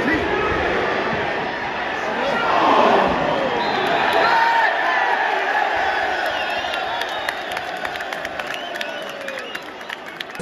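Football stadium crowd: a dense mass of voices shouting and calling. It swells around three seconds in, then eases off toward the end, with scattered sharp clicks in the last few seconds.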